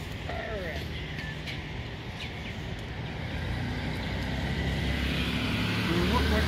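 Steady outdoor traffic noise, a hum of vehicles that grows slowly louder, with faint voices in the background.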